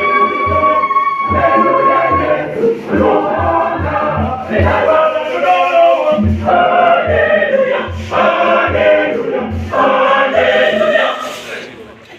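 Mixed choir singing, accompanied by a pair of conga drums beating a steady rhythm of about two beats a second. The singing falls away near the end.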